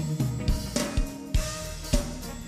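Church band music with a drum kit keeping a steady beat, low kick-drum hits about twice a second under sustained bass and keyboard-like notes.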